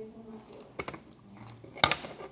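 Crunching of a corn tortilla chip being bitten and chewed: two sharp crunches, one just under a second in and a louder one near the end.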